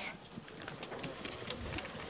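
Footsteps crunching on dry earth and gravel as several men walk up a hillside, irregular soft scuffs and clicks with one sharper tick about one and a half seconds in.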